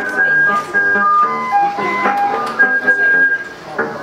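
A group singing an upbeat song together, a simple melody of clear held notes stepping from pitch to pitch.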